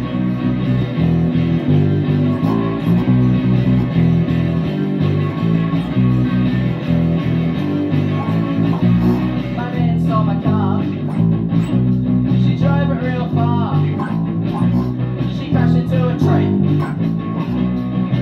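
Electric bass guitar played through an amp along to a recorded punk rock track with electric guitars. Higher, wavering lines join the mix about ten seconds in.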